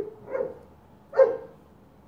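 A dog barking three times in quick succession, the third bark, just over a second in, the loudest.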